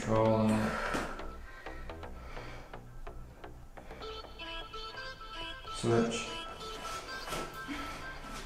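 Background music with a steady beat. A short voice-like sound comes right at the start and again about six seconds in.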